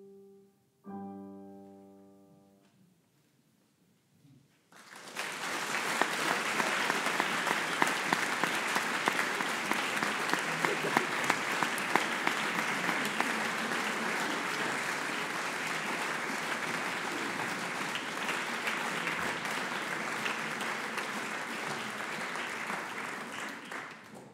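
A grand piano's closing chord rings out and fades over a couple of seconds. Then an audience bursts into applause about five seconds in, clapping steadily and dying away near the end.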